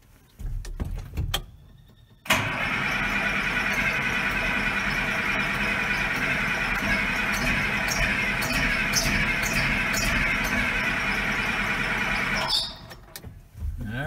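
A few clicks, then the Case 2090's starter cranking the diesel engine for about ten seconds with a steady whine, stopping suddenly without the engine catching: air still in the fuel lines after the fuel filter change.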